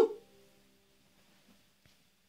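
Acoustic guitar's last chord ringing out and fading away, just after a short, loud cry that rises and falls in pitch at the very start. A faint click near the end.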